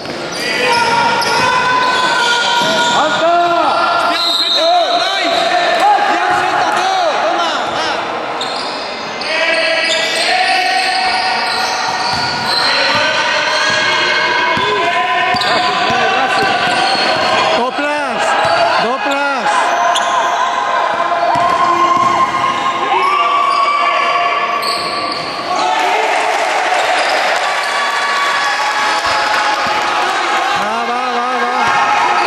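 A basketball bouncing on a sports-hall floor during play, with voices calling out and echoing around the large hall.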